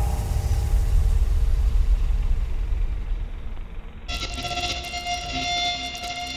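Logo-sting sound design: a deep rumble swells for about four seconds, then changes abruptly to a sustained ringing chord of steady tones.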